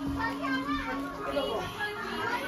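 A mix of children's and adults' voices talking and calling over one another, with one steady low note held for about the first second and a half before it stops.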